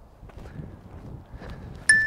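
Faint background noise, then near the end a single sharp metallic clink that rings briefly with a clear tone.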